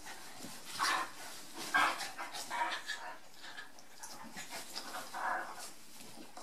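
Two dogs play-fighting, giving short vocal bursts four or five times, loudest about two seconds in, over rustling of the bedding as they wrestle.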